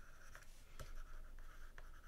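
Faint scratching of a stylus writing by hand on a tablet, with a few light taps about every half second as the pen strokes start.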